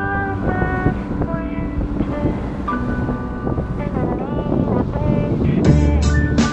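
Wind rumbling on the microphone of a sailboat under way, with background music and a melody over it. A drum beat comes in near the end.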